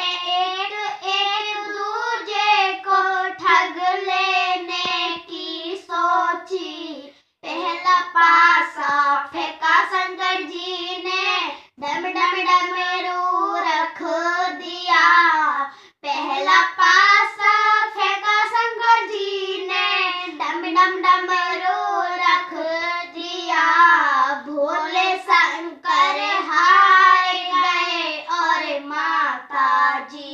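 Young girls singing a Hindi devotional song (bhajan) without accompaniment, in long sung phrases broken by short breaths about 7, 12 and 16 seconds in.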